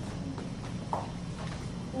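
Children tapping their cheeks with their hands to keep a steady beat, making faint hollow clopping taps about half a second apart.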